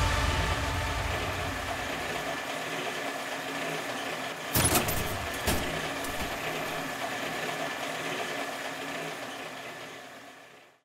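A steady, engine-like hum with a faint high tone, broken by two short knocks about halfway through, fading out at the end.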